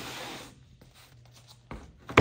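A cut wooden panel sliding across a plywood workbench top: a soft scraping rub for about half a second, then a short light wooden knock near the end as a piece is set down.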